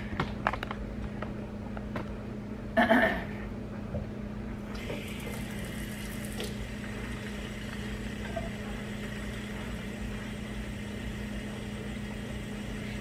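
Handling clicks and a brief knock, then a kitchen faucet running into a plastic bottle as it fills, starting about five seconds in. The water is strongest at first, then settles to a steady hiss. A steady low hum sits underneath.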